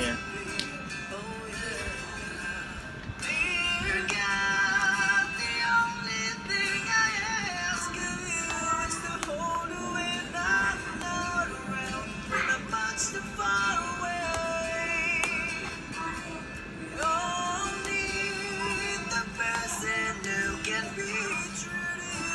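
A man singing a rock ballad with his own acoustic guitar accompaniment, some long held notes wavering with vibrato.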